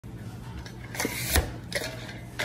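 A whole potato being pushed through the stainless blade grid of a lever-action french fry cutter, cut into skin-on strips with a crunching sound. Two knocks about a second in, the second a louder thump.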